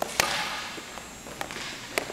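A sharp crack of an ice hockey stick striking a puck on a pass, echoing in the rink, followed by two lighter clicks later on.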